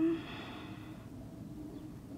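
A short breathy exhale through the nose, starting with a brief voiced catch and fading within about a second, over a steady low hum.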